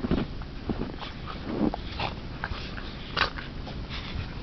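A Pembroke and a Cardigan Welsh corgi play-fighting in deep snow, making irregular short dog noises. The sharpest burst comes about three seconds in.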